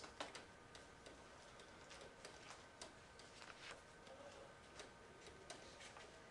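Faint, irregular light ticks and taps of a stylus writing on a tablet screen, over a faint steady hum.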